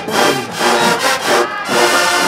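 Marching band's brass section playing loudly in short, punchy phrases, about two a second.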